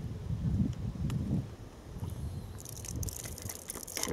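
Wind rumbling on the microphone, then from about two and a half seconds in a steady hiss of water squirted from a plastic squeeze wash bottle onto a sieve filter, rinsing the zooplankton sample down into one corner.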